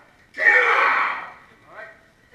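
A person's loud vocal outburst, about a second long, starting a third of a second in and fading away.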